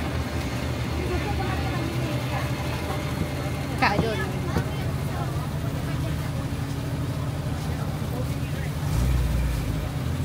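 Busy street-market ambience: a steady low engine hum under background voices, with one sharp clatter about four seconds in.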